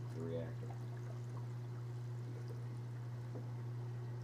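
Water dribbling out of an unscrewed reactor filter canister as its housing is lifted off, over a steady low hum.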